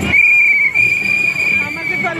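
A red plastic whistle blown in a long, shrill, steady blast with a slight waver. The blast breaks briefly just under a second in, then is held again.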